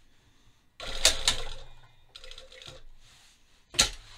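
Sewing machine stitching in short runs: a burst of about a second, then a shorter, quieter run, then one sharp click near the end.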